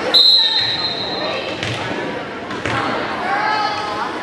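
Volleyball referee's whistle: one steady high blast of about a second and a half, authorizing the serve. Two dull thuds follow about a second apart, under gym voices.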